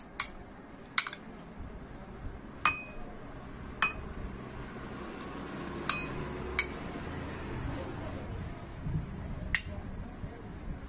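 A steel spoon clinking against glass bowls while papaya pieces are scooped and dropped into a cut-glass serving bowl. There are about seven separate clinks at uneven intervals, some ringing briefly.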